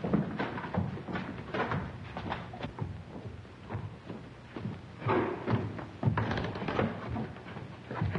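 Shuffling footsteps, bumps and knocks, with grunts of effort, from people hauling a limp body.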